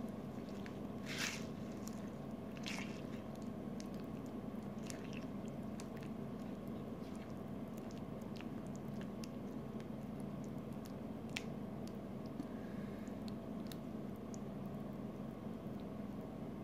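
Wooden spoon stirring thick beef stew with frozen peas and corn in a ceramic crockpot: wet squelching with scattered short clicks of the spoon against the crock, over a steady low hum.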